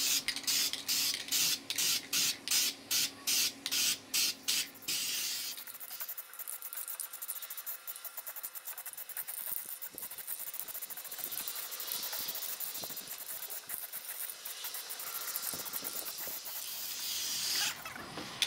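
Aerosol can of heat-resistant engine enamel spray paint: a quick run of about a dozen short bursts over the first five seconds, then a long continuous spraying hiss that swells and eases until near the end.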